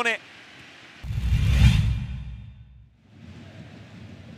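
Broadcast transition sound effect: a whoosh with a deep boom beneath it, starting suddenly about a second in, swelling and then fading out over about a second and a half. Faint stadium crowd ambience comes before it and returns after.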